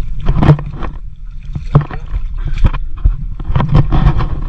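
Shallow pond water and wet mud being scooped and worked by hand, in irregular splashes and sloshes about a second apart.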